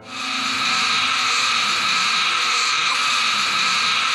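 A woman's long, raspy roar, a screeching growl held at a steady pitch and loudness for about four seconds.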